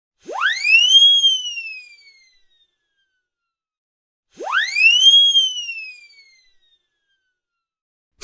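A high whistle-like tone that sweeps quickly up and then glides slowly down, each call lasting about two seconds, heard twice about four seconds apart.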